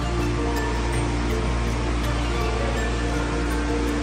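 Background music of sustained low notes over a steady rushing noise of muddy floodwater pouring down a car park ramp.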